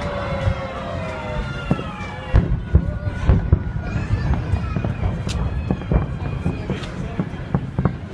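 Fireworks salute: after a few crowd voices at the start, a run of low booms and many sharp cracks from the bursting shells sets in about two seconds in and goes on to the end.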